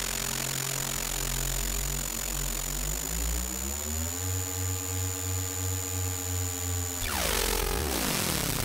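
Chiptune drone from the ZX Spectrum 128K's AY sound chip: buzzy held tones that glide upward about three seconds in and then pulse steadily, with a thin high whine over them. Near the end it breaks into a falling sweep with hiss.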